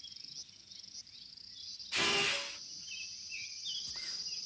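A harmonica blown once, a short harsh chord about two seconds in, played the wrong way round. Under it, a steady high insect drone with scattered bird chirps.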